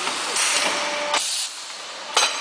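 SJD-666B plastic bowl thermoforming machine running: a loud hiss of compressed air from its pneumatic stations, with light mechanical clicks, that drops off sharply about one and a half seconds in.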